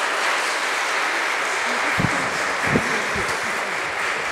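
Congregation applauding steadily, with a few brief voices mixed in about halfway through.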